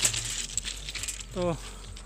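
Loose railway ballast stones clinking and crunching as someone moves over the track bed, with a few sharp clicks at the start.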